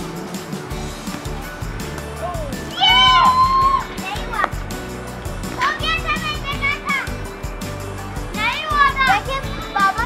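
Background music running under children's high-pitched shouts and calls, which come three times: about three seconds in (the loudest), about six seconds in, and near the end.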